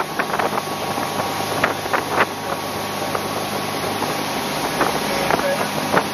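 Motorboat engine running steadily at speed while towing, with the rush of water and wind across the microphone.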